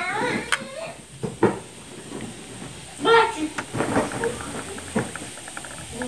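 Plastic ink bottle pressed onto an Epson EcoTank L3150's ink-tank inlet with a couple of sharp clicks. Then a faint, rapid ticking like bubbling as air enters the upturned bottle while the ink drains into the tank.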